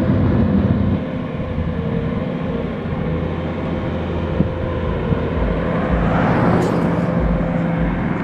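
Engines of road-paving machinery running steadily at the roadside: a low rumble with a steady hum, and a short knock about four and a half seconds in.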